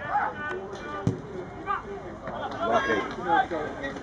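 Outdoor football-pitch sound: scattered shouting voices of players and onlookers, with a single sharp thud about a second in.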